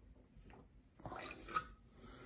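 Water splashing as an aquarium fish net is drawn up through the surface of the tank, starting about a second in, with one sharper splash partway through.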